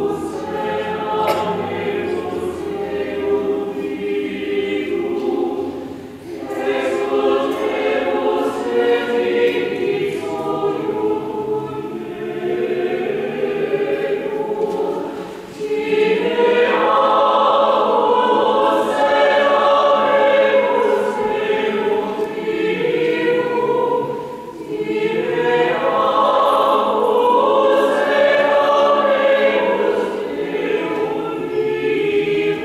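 Church choir singing the offertory hymn in long phrases, with short breaks between them. It swells fuller and louder about halfway through.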